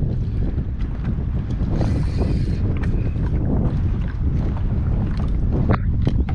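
Wind buffeting the microphone in a steady low rumble, with choppy water lapping against a kayak hull in short splashes and knocks.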